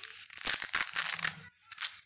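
Fabric of a doll's dress rustling and crinkling close to the microphone as it is handled and unfastened: a rough, scratchy noise for about a second, then a short second burst near the end.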